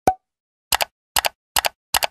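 End-screen animation sound effects: one pop with a brief tone right at the start, then four quick double clicks, about 0.4 s apart, as on-screen buttons and banners pop in.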